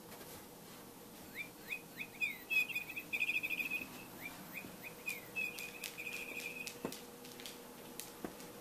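A songbird chirping: a run of short falling whistled notes, then two fast warbling trills. A few sharp clicks follow in the second half.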